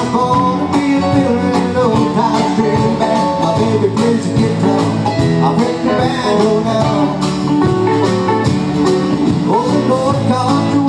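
Live country band playing with guitars, keyboard and drums, over a steady drum beat.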